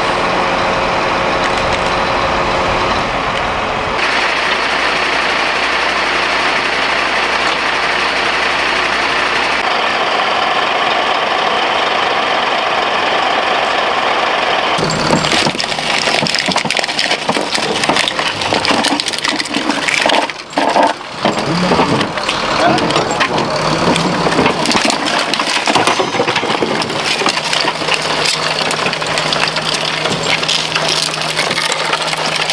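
Truck engines idling steadily, with indistinct voices. The sound shifts abruptly about 4, 10 and 15 seconds in, and is busier and more irregular in the second half.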